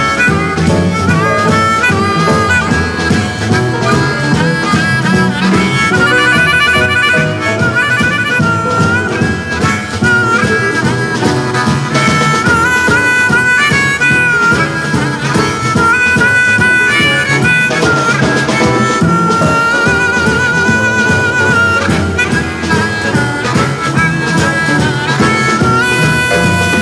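Blues harmonica playing a lead line with bent, sliding notes over a backing band.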